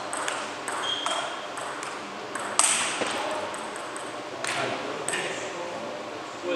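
Table tennis ball clicking off bats and table in a rally, a run of short sharp pings at an irregular pace, the sharpest a little past halfway, with more pings from nearby tables in the hall.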